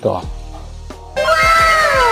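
A cat's long meow, falling steadily in pitch, starts suddenly about a second in.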